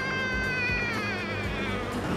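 One long, high drawn-out note like a wailing cry, held and then sliding down in pitch and fading near the end, over steady background music.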